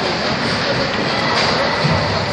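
Ice hockey rink ambience during play: a steady rush of noise from skates on the ice and the arena, with a couple of faint knocks.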